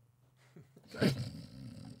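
A man's low, rough, drawn-out vocal sound, like a growl of approval, starting about a second in and still going at the end.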